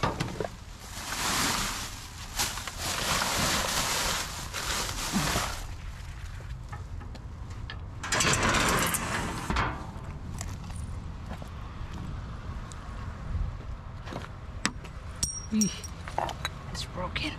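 Plastic rubbish bags and cardboard being rummaged through in a wheelie bin: two long spells of rustling and crinkling, with a few sharp knocks near the end.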